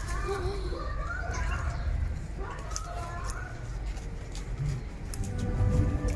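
Light background music over a steady low outdoor rumble, with faint distant voices.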